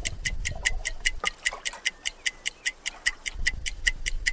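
Fast, steady ticking of a clock or timer sound effect, about five sharp ticks a second.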